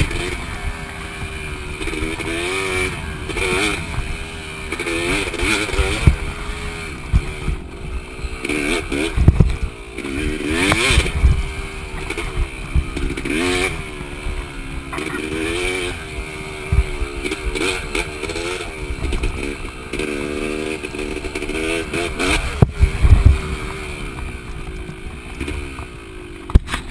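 2005 Yamaha YZ250 two-stroke dirt bike engine, revving up and falling back again and again while being ridden. There are several heavy thumps from bumps in the trail.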